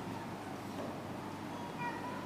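Quiet room tone in a pause between a man's sentences, with a faint, brief high tone near the end.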